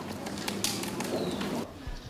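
Outdoor ambience: a bird calling over a steady background hiss.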